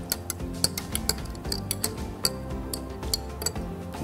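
A spoon stirring a drink in a tall drinking glass, clinking lightly and irregularly against the glass a few times a second, over soft background music.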